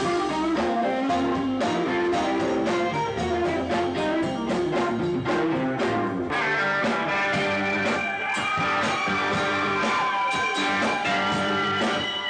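Live blues-rock band playing, an electric guitar leading over drums and keyboard. From about six seconds in, the music settles into long held high notes with bending pitch.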